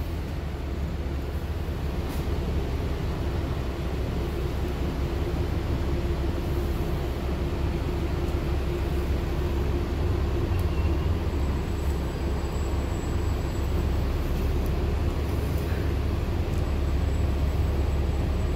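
City bus running along the road, heard from inside the cabin: a steady low engine and road rumble with a faint even hum over it.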